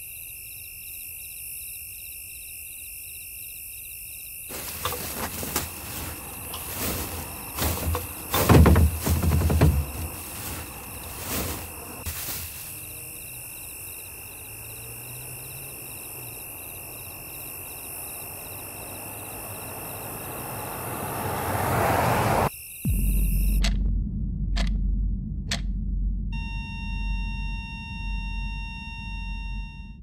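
Insects chirping steadily, then a plastic garbage bag rustled and knocked about for several seconds. Next a vehicle's noise swells louder and louder and cuts off abruptly, followed by a low hum, a few sharp clicks and a steady beep-like electronic tone.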